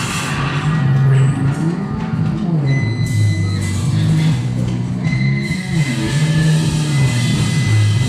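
Rock band playing: a bass guitar riff stepping up and down under electric guitar, with high held guitar notes coming in about three seconds in and again near the end.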